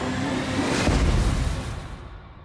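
Film-trailer soundtrack: a deep boom that swells about a second in and then fades away, with music underneath.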